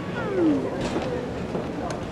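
A short animal-like vocal cry that slides down in pitch in the first half second, followed by a couple of light knocks.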